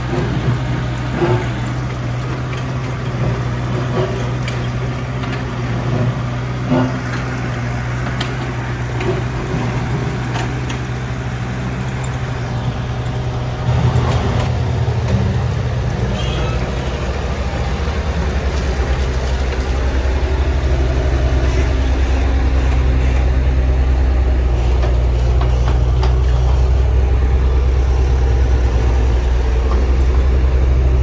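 Kubota U55-4 mini excavator's diesel engine running steadily, with occasional short knocks and clanks. About halfway through, the engine note deepens and grows gradually louder.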